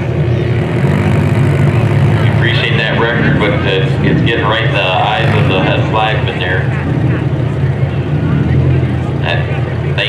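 A row of front-wheel-drive stock bump'n'run cars idling together on the start line, a steady low rumble. Indistinct voices sound over it from about two and a half to six and a half seconds in.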